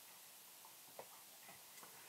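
Near silence: room tone with a few faint, short clicks, the clearest about a second in.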